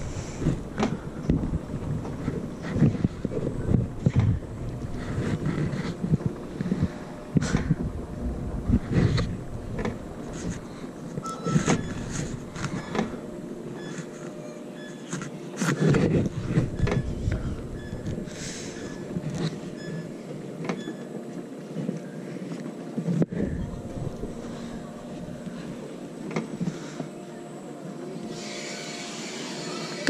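Lauser Sauser alpine coaster sled running along its steel rail, wheels rumbling and rattling with frequent small knocks. The deep rumble fades out about halfway through, leaving a lighter clatter.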